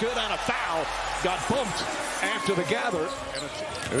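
Basketball broadcast audio: a ball being dribbled on the court in short repeated bounces, with a commentator's voice underneath.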